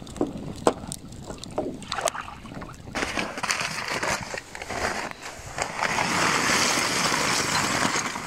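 Leftover charcoal lumps tipped from a paper bag onto a small wood fire. There are a few scattered clicks and knocks at first. From about three seconds in comes a continuous rattling, rustling pour, loudest near the end.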